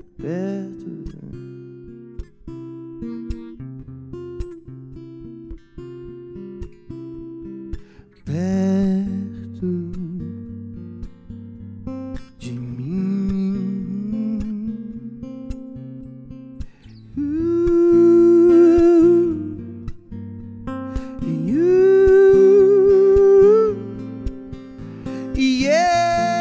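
Acoustic guitar playing steady picked notes, with a man's voice singing long held, wavering notes over it several times, loudest in the second half.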